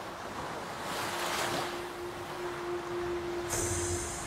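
Gentle waves washing onto a sandy shore, swelling and ebbing. A single steady held tone comes in about a second in, and a brief high hiss near the end.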